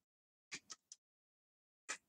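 Faint clicks of calculator keys being pressed: three in quick succession about half a second in, then one more near the end.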